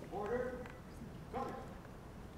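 A JROTC color-guard cadet calling out two drawn-out drill commands: a longer call at the start, then a short one about a second later.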